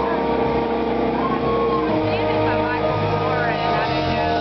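Live band playing sustained, held chords, with voices wavering over the top in the second half.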